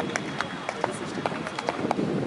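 Background voices murmuring, with a run of irregular sharp clicks, roughly five a second.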